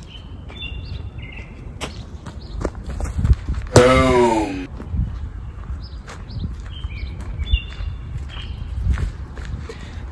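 Outdoor yard ambience: wind rumbling on the microphone, birds chirping and footsteps on grass and dirt. About four seconds in comes one loud, falling, voice-like cry, the loudest sound here.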